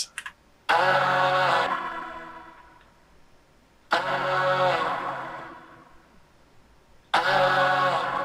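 Layered pop backing vocals singing "ah" in two harmony parts: three sustained sung notes about three seconds apart, each held for about a second and then fading away in a long tail.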